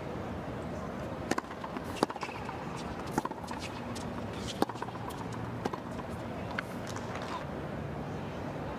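Tennis rally: a ball struck back and forth by rackets, sharp pops about every second or so, over a low steady crowd murmur.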